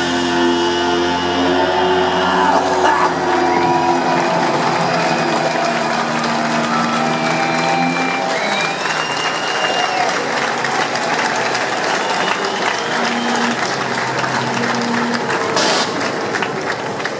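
A rock band's final held chord rings out for about four seconds, then a large concert crowd cheers and applauds, with a few whistles.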